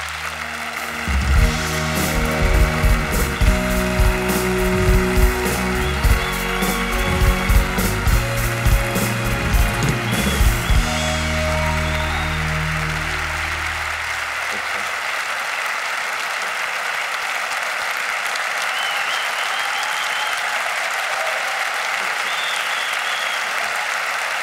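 Large audience applauding while walk-on music with a pounding beat plays. The music fades out a little past halfway, and the applause carries on alone.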